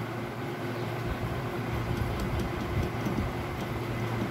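Steady low mechanical hum with a faint higher drone over it, and a few faint light clicks.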